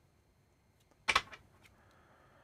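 A stiff, brand-new deck of playing cards being handled for a shuffle: a brief crackle of a few card clicks about a second in.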